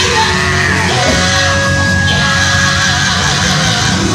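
Loud live gospel quartet music with band backing and shouting. A long note is held from about one second in to about three seconds in.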